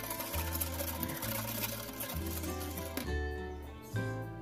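Rapid clicking of a wire whisk beating against a metal saucepan as a thin milk mixture is whisked, stopping about three seconds in, over background music.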